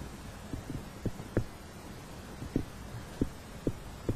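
Soft, irregular low thumps, about seven in four seconds, over a quiet steady hum.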